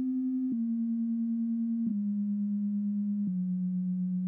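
ReaSynth software synthesizer, a triangle wave blended with an extra sine tone detuned by 77 cents, played from the virtual MIDI keyboard as a slow descending line of held notes, one every second and a half or so. The detuned sine gives each note a slight wavering, beating sound.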